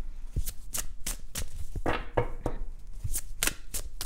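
A tarot deck being shuffled by hand: a run of irregular soft card clicks and slaps, several a second.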